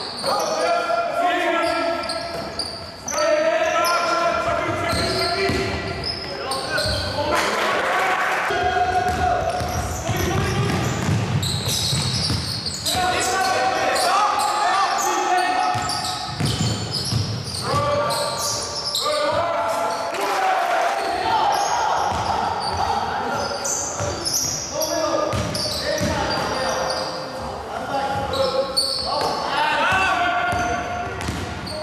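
Basketball game sounds in a reverberant sports hall: the ball bouncing on the court over nearly continuous shouting and calling voices.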